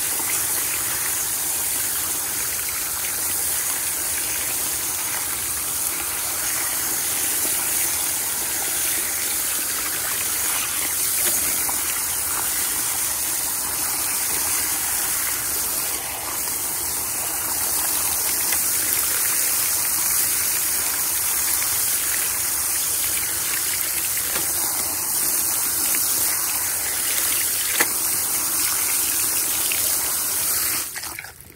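Garden hose spray nozzle running steadily, the water splashing onto a wet cotton onesie and into a shallow plastic tub while the excess dye is rinsed out.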